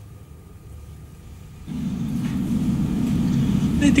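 A low, steady rumble comes in a little under halfway and holds until a voice begins; before it the sound is quiet.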